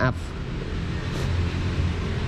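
A steady low motor hum, with a short spoken word at the start.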